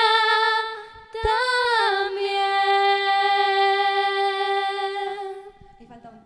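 A woman singing solo and unaccompanied: a short phrase that rises and then falls onto one long held note, which fades away near the end as the song closes.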